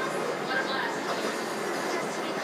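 Steady background noise with faint voices behind it; no distinct sound from the ring being fitted stands out.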